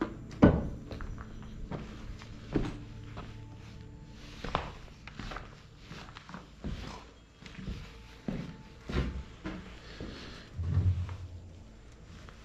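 Footsteps on rubble and debris with irregular knocks and thuds, over background music. Near the end comes a heavier thud as a small wooden hatch door in the wall is handled.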